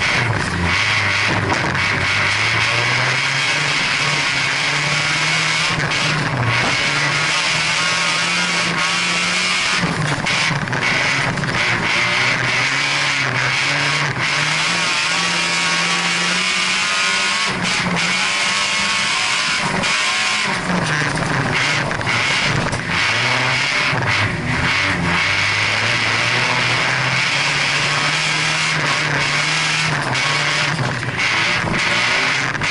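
Folkrace car's engine heard from inside the cockpit, its pitch rising and falling again and again as the driver accelerates and lifts through the corners, over a steady rushing noise of the car at speed.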